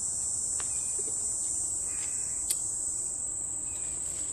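Steady high-pitched chorus of insects in woodland, an unbroken drone, with a single sharp click about two and a half seconds in.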